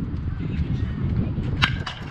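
Baseball bat hitting a pitched ball: one sharp crack about one and a half seconds in, followed by a fainter click a moment later. A steady low rumble of wind on the microphone lies under it.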